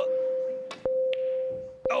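Snooker balls clicking sharply a few times as the cue ball runs on to the pink, over a steady held tone.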